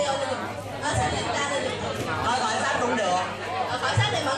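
Many people talking at once in a room: overlapping chatter of an audience.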